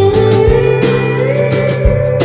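Instrumental break of a blues-rock song: a lap steel guitar slides upward in pitch over bass and a steady drum beat.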